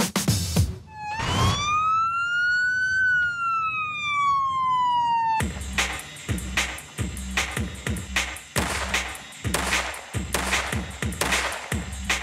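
A single siren wail that rises for about two seconds and falls for the next two and a half, then cuts off as music with a steady, heavy beat takes over.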